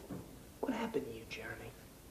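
A man speaking briefly in a low, hushed voice, one short phrase of about a second, preceded by a short sharp sound at the start.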